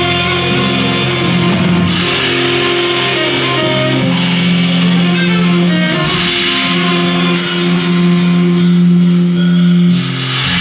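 A live band of drum kit and keyboard playing: held low keyboard chords that change every couple of seconds, under a steady wash of cymbals.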